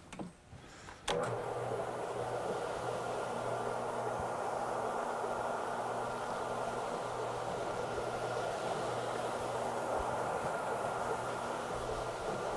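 Cimex Cyclone rotary carpet-cleaning machine switching on with a click about a second in, then its motor and spinning brush head running steadily over a damp carpet tile with a constant hum.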